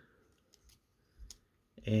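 A few faint clicks and a soft knock from the plastic parts of a small Transformers action figure being handled as a peg is pushed toward its hole; the peg has not yet gone in.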